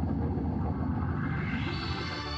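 Outro music: a low, rumbling organ passage in which the bright upper tones drop away and then come back near the end, between steady Hammond organ chords.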